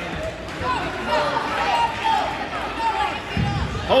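Onlookers shouting and calling out in a gym, with a thud about three and a half seconds in as a youth wrestler is taken down onto the wrestling mat.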